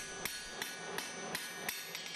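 Blacksmith's hand hammer striking red-hot iron on an anvil, a quick, even series of blows about three a second.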